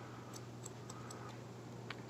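Faint, scattered light ticks from a hair-cutting comb and scissors being handled as sections of wet hair are combed out. Under them runs a faint steady low hum.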